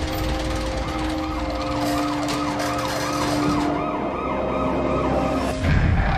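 A siren going rapidly up and down over sustained low musical notes. The siren pattern stops a little after halfway, and a low boom comes near the end.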